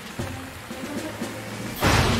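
Steady rain with soft background music, then a sudden loud crack of thunder near the end.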